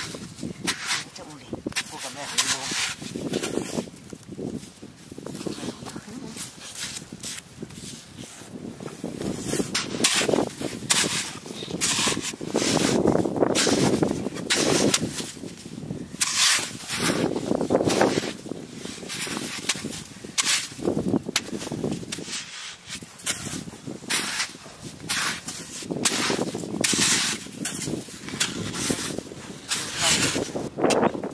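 A hoe repeatedly chopping into and scraping through clay mud on a tidal flat, in irregular knocks and crumbling clods.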